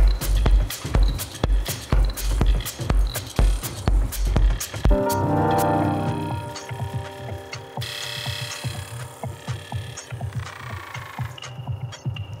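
Melodic electronic music played live on Elektron hardware, including an Octatrack. A steady kick drum at about two beats a second drops out about five seconds in, leaving sustained synth chords over a light ticking rhythm. A new chord swells in near the end.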